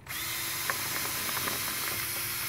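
Cordless drill switched on suddenly and running at a steady speed, spinning an ear of corn on its bit as the cob is pushed down through a corn-cutting tool to strip off the kernels. A steady motor whine runs throughout, with a few short clicks about a second in.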